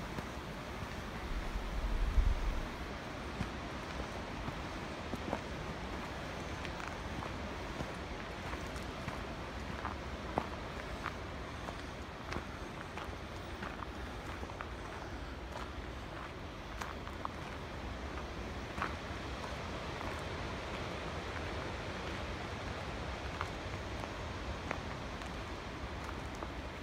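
A hiker's footsteps on a soft dirt forest trail: scattered light steps over a steady background hiss, with a brief low rumble about two seconds in.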